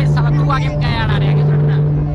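Raised voices over a steady low hum from the stage sound system.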